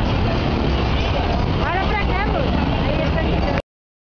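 City street noise: a steady traffic rumble with a voice heard briefly about two seconds in. The sound cuts off abruptly near the end.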